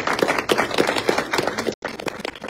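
Congregation applauding: many hands clapping at once, in a dense, uneven run of claps.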